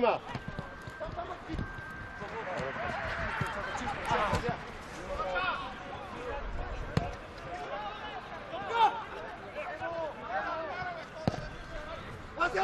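Players shouting and calling to each other across an outdoor football pitch, with a few thuds of the ball being kicked; the sharpest kick comes about seven seconds in.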